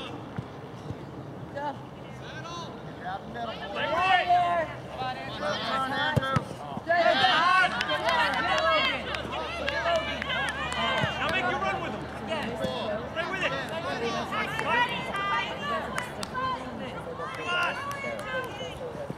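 Several voices shouting and calling out across a soccer field, overlapping, loudest about four and seven seconds in.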